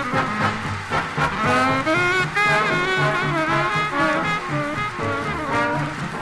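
1940s swing big band playing an up-tempo instrumental: horn lines over a steady walking bass beat.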